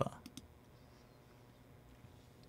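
A few faint, short clicks in the first half second, then quiet room tone.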